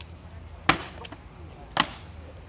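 Two sharp, woody knocks of rattan swords striking shield and armour in armoured combat, about a second apart, the first the louder.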